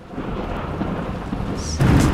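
Thunderstorm sound effect: heavy rain with a rumble of thunder that builds, swelling into a louder thunderclap near the end.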